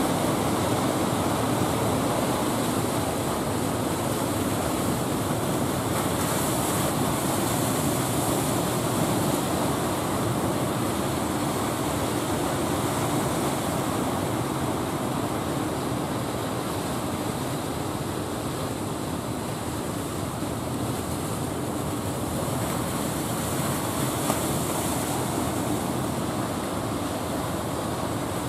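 Steady wash of surf and wind with a fishing boat's inboard engine running underneath as the boat comes in through the waves.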